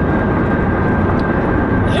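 Steady road noise inside a car's cabin at highway speed: an even low rumble of tyres, wind and engine.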